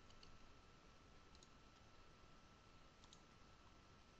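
Near silence: faint room tone with a steady thin whine, and a few faint computer mouse clicks near the start, about a second and a half in, and about three seconds in.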